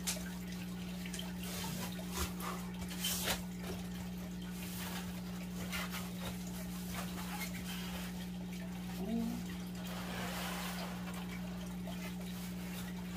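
Cardboard box being opened and handled by hand: flaps folding back and scraping, with short scuffs and clicks and a stretch of rubbing near the end, over a steady low hum.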